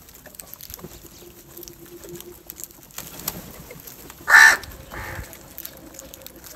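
House crow giving one loud caw about four seconds in, followed by a softer call, over faint scattered ticks of crows pecking grain on concrete.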